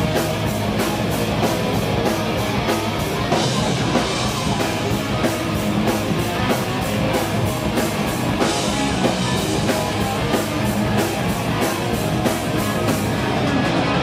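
Heavy metal band playing live: distorted electric guitars, bass and drum kit at a driving, steady beat.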